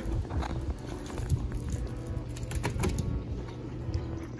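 Dog splashing and pawing in the water of a plastic kiddie pool: irregular small splashes over a low rumble of wind on the microphone.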